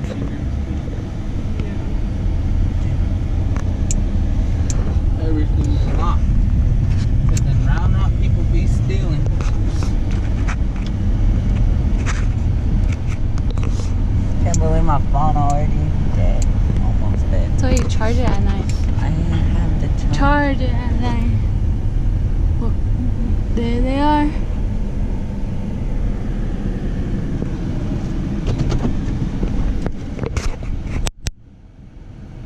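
Steady low rumble of a Chevrolet on the move, heard inside its cab: engine and road noise. Brief voices come through over it now and then in the middle stretch.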